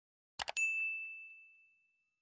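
Two quick clicks, then a bright notification-bell ding that rings out and fades over about a second and a half: the sound effect of an animated subscribe-and-bell reminder.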